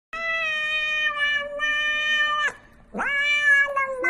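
A cat giving two long, drawn-out meows. The first is held steady for about two and a half seconds and drops in pitch at the end. The second starts about three seconds in with a sharp upward sweep and then holds.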